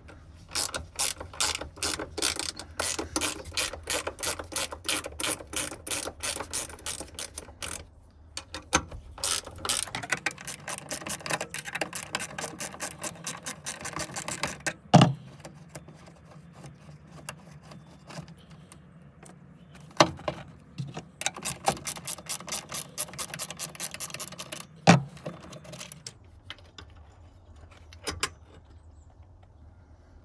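Ratchet wrench clicking in runs of about three to four clicks a second as it backs out the bolts holding the shift lever to the floor tunnel. Three louder sharp knocks come at even intervals in the second half.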